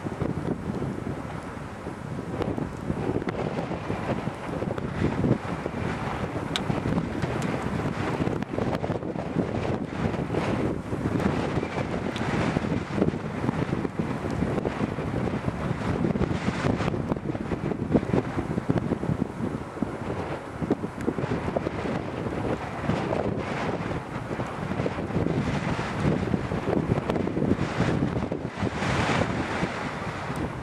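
Wind buffeting the microphone in gusts, a steady low rumbling noise that rises and falls.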